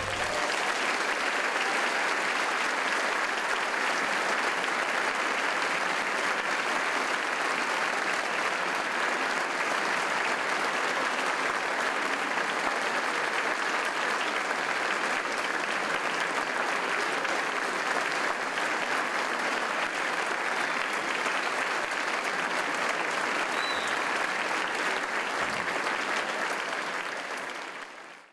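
Concert hall audience applauding steadily, a dense even clapping that fades out at the very end.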